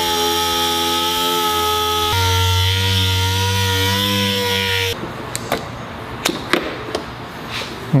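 Dual-action (DA) sander running steadily while sanding old clear coat on a car hood with 240 grit, its pitch stepping down slightly about two seconds in. It stops about five seconds in, and scattered clicks and rubbing follow.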